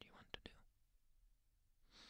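Mostly near silence in a pause between close-miked whispered phrases: a whispered word trails off at the start, followed by a few soft mouth clicks, then a quiet breath near the end.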